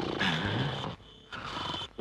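A rough growling roar in two parts, with a short break about a second in.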